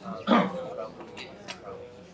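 Murmur of many people talking in pairs across a room, with one short, loud vocal outburst about a third of a second in.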